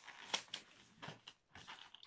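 Faint rubbing, squeaks and small clicks of a latex modelling balloon being twisted and wrapped by hand.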